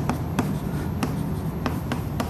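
Chalk writing on a chalkboard: a run of short, irregular taps and scratches as words are written out.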